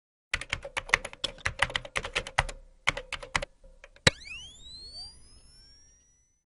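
Logo-intro sound effect: a quick run of keyboard typing clicks for about three seconds, then a single sharp hit about four seconds in, followed by a cluster of rising tones that fade away.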